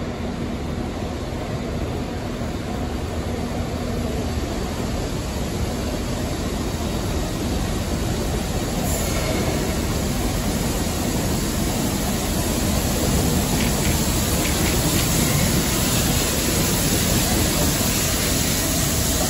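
LMS Royal Scot class 4-6-0 steam locomotive No. 46115 Scots Guardsman running slowly in with its train of coaches, its wheels and running gear growing steadily louder as it approaches.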